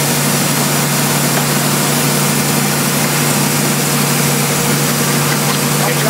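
Plastic-molding machinery running steadily: a constant low hum under a loud, even hiss.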